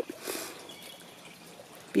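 Quiet outdoor ambience with faint bird calls in the distance.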